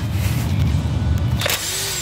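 DeWalt XR cordless impact wrench with a 14 mm socket running in a short burst about one and a half seconds in, breaking loose a tight oil-pan drain plug, over background music.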